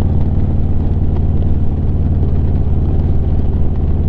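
Harley-Davidson Street Glide's V-twin engine running steadily while the motorcycle cruises along the road, a constant low drone.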